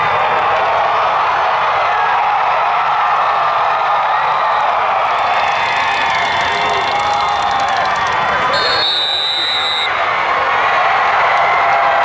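Football stadium crowd cheering and shouting, with many voices overlapping, as a team drives at the goal line for a one-yard touchdown. A brief, steady high tone sounds about nine seconds in.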